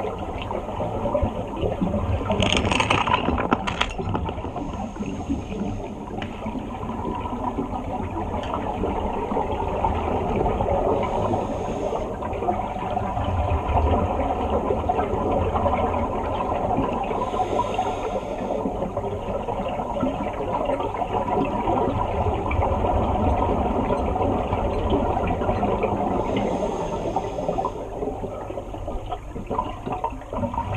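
Underwater sound in a swimming pool: a steady low rumble and wash of water, broken four times, several seconds apart, by a brief rush of scuba exhaust bubbles as a diver breathes out through the regulator.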